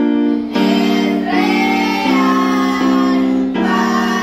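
Music: a slow song with children's singing voices over keyboard accompaniment, held notes changing about every three-quarters of a second.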